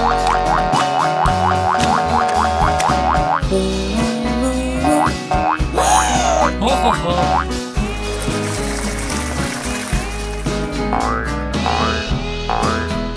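Upbeat children's cartoon background music with comic sound effects: a quick run of repeated notes, about five a second, for the first few seconds, then effects that slide up and down in pitch around the middle.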